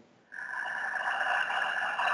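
A woman's slow, deep breath in, close to the microphone. It is a steady, airy rush that starts about a third of a second in and lasts about three seconds.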